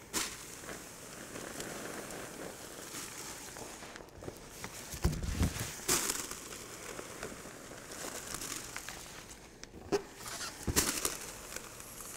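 Inflated rubber balloons squeaking and rubbing against each other and the pot as they are crammed into a pot of boiling liquid nitrogen. A steady hiss and a few handling bumps run underneath, louder about five seconds in and again near the end.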